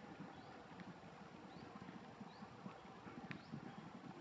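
Faint background: a low, uneven rumble with a few faint, short rising bird chirps scattered through it and a single faint click near the end.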